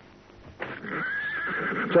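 A horse whinnying: one long, wavering high call that starts about half a second in and ends in a louder, lower note that falls away.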